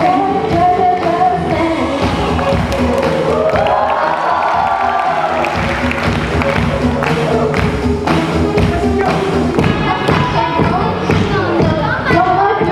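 A mixed group of school students singing a pop song together into microphones over backing music with a steady beat.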